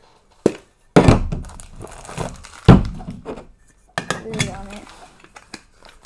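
Hands prying open a metal Funko Soda can from its bottom and unwrapping the crinkly packaging of the figure inside: a click, crinkling rustles, and one sharp thunk about two and a half seconds in, the loudest sound.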